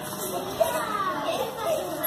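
Young children's voices talking and playing at once, an overlapping babble with no clear words, and one short sharp tap a little over half a second in.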